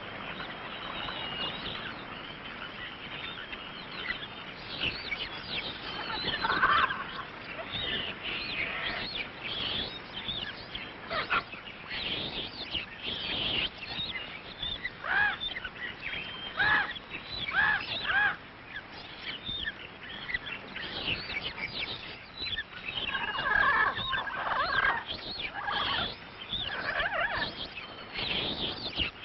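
Many bird calls and chirps over a steady hiss, with a run of louder, repeated, falling calls in the middle and another cluster near the end.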